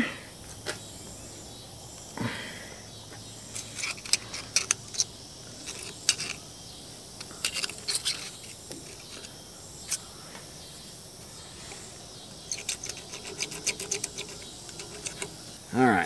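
Scattered light metallic clicks and scratches of a steel dental pick scraping hardened grease and grime out of the grease raceway in a bulldozer bucket pin bore. The clicks come in two spells of quick, irregular ticks, one a few seconds in and one near the end.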